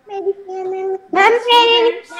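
Children's voices in a drawn-out, sing-song chant: one held, level note for about the first second, then louder and higher, wavering calls.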